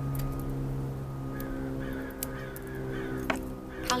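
A bird calling in the background, with a few light clicks as small leaves are plucked off a cut elephant bush (Portulacaria afra) stem.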